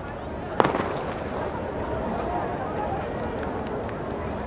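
A single sharp bang from a starting gun firing to start a foot race, about half a second in, followed by a steady outdoor background.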